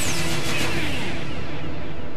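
Television channel ident sting: a falling whoosh as the logo flies in, then a held musical chord that dies away over about a second and a half, with a low rumble underneath.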